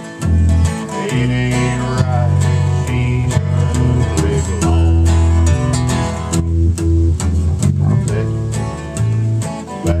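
Steel-string acoustic guitar and electric guitar playing together, an instrumental passage of changing chords with strong bass notes.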